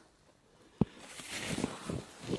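A single sharp click, then a soft rustling of cloth that grows louder, as chunks of chaga are set out on a cloth sack.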